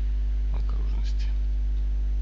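Steady low electrical hum from the recording chain, with a brief soft, half-whispered utterance about half a second in.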